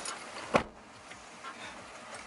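A single sharp click or knock about half a second in, then faint steady noise inside a pickup truck's cab.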